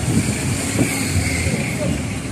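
Road traffic on a busy street: cars running past, heard as a steady low noise.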